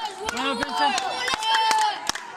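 Table tennis balls clicking sharply and irregularly off bats and tables around a busy hall, under the chatter and calls of young players and spectators.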